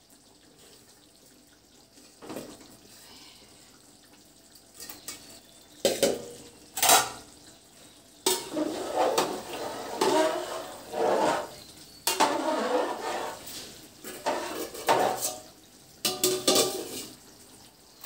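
Metal ladle stirring rice in water in an aluminium pot, knocking and scraping against the pot: a few separate clanks at first, then busier clattering and stirring from about eight seconds in.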